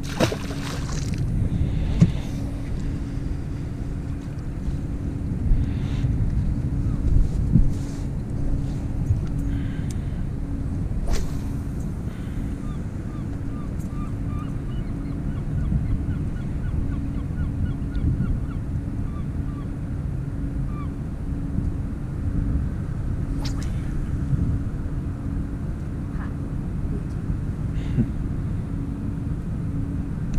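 Yamaha outboard motor on a small fishing boat running steadily at low speed, a low rumble with a steady hum, with a few light knocks scattered through.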